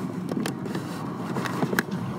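FPV quadcopter drone's motors buzzing in flight, the pitch wavering up and down with the throttle, with scattered sharp clicks.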